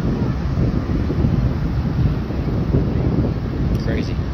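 Wind blowing across a phone's microphone: a loud, uneven rush of noise, heaviest in the low range.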